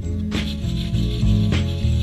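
Hand sanding, sandpaper rubbing over a surfboard's ding repair, under background music with held bass notes and a regular beat.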